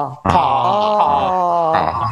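A man's voice holding a long sung open vowel as a singing-technique demonstration, the tongue drawn back to shape the vowel. It breaks off for a moment just after the start, then is held again with a slight waver in pitch.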